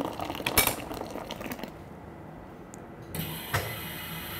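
Hot water running from a dispenser tap into a glass French press of coffee grounds, with a sharp click about half a second in.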